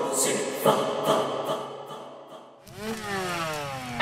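Film soundtrack: a wordless choir chanting over music, fading away over the first couple of seconds. Then a pitched whine rises briefly and falls steadily in pitch for about a second, with a sudden loud bang just at the very end.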